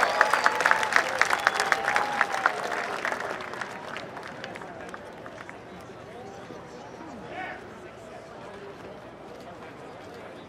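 Crowd clapping and cheering, the applause thinning out and dying away over the first three or four seconds to a low murmur of voices.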